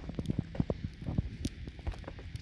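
Footsteps on a snow-covered wooden deck: a quick, irregular run of soft, low steps.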